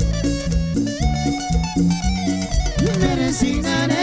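Live Latin dance band playing an instrumental passage: a held melody line over a steady, rhythmic bass and percussion beat, with a sliding note about three seconds in.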